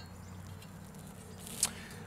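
Quiet handling of a steel square against the end of a log. There is one sharp click about one and a half seconds in, over a faint steady low hum.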